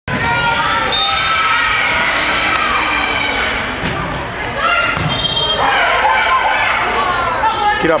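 Volleyball being played in a gym: players and spectators call out and chatter throughout, with two sharp hits of the ball, about four and five seconds in.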